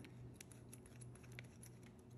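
Very faint snips and crinkles of scissors cutting across the top of a plastic anti-static bag, a scatter of small clicks over a low steady hum.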